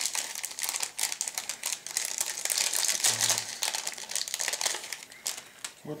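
A small clear plastic packaging bag crinkling and rustling in the hands as it is opened to take out a model kit's rubber tyres, in dense, irregular crackles.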